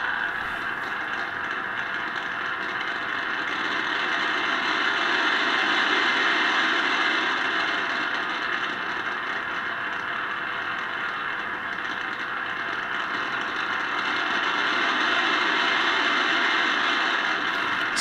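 Static hiss from the speaker of a Specific Products WWVC frequency comparator, slowly swelling and fading about once every ten seconds. The slow swell is the beat between a 10 MHz test signal set 0.1 Hz off and the reference standard.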